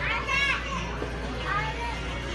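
High-pitched children's voices, two short calls about half a second in and again near the end, over a steady low hum.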